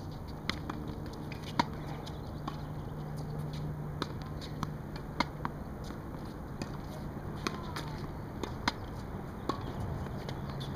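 Tennis balls being struck with rackets and bouncing on a hard court: a string of sharp pops, about one every second or so, over a steady low hum.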